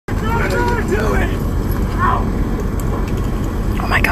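Steady low rumble of a car's interior picked up by a phone inside the car: road and engine noise, with a voice speaking in snatches over it.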